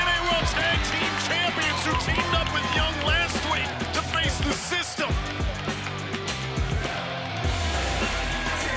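Music played over the arena, with a steady bass line, plus crowd noise with shouting voices, strongest in the first half.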